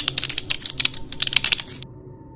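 Computer keyboard typing sound effect: a fast, uneven run of key clicks that stops near the end.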